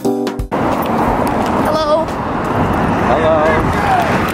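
Background music cuts off about half a second in, giving way to steady city street noise with traffic, and two brief snatches of voices partway through.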